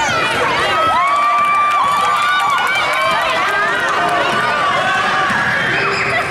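Players' sneakers squeaking on a hardwood gym floor as they run, with many short curving squeaks and a few held ones, over steady crowd voices from the stands.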